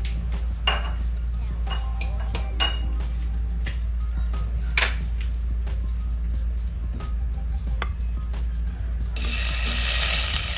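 Steady low hum with a few light metallic clinks. About nine seconds in, chopped ginger drops into hot oil in a stainless steel saucepan and starts sizzling loudly.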